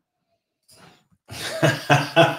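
A man bursting into laughter about a second and a half in, in short rapid bursts.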